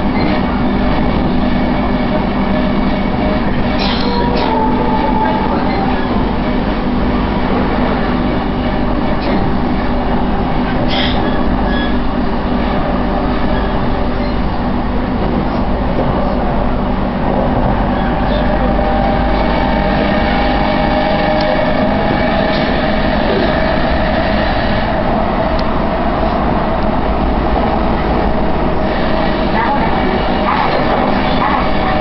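Inside a JR East E233-1000 series electric commuter train's motor car running at speed: a steady rumble of wheels on rail with the tonal whine of the traction motors, which rises slightly in pitch about two-thirds of the way through. A few sharp clicks sound from the running gear.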